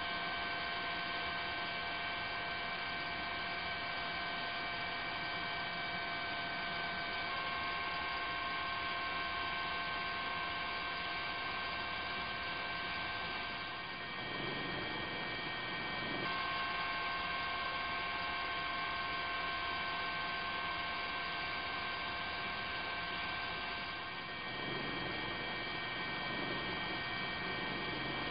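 A steady hum made of several fixed high tones over a faint hiss, holding an even level; the tones step to slightly different pitches about a quarter of the way in and again past halfway.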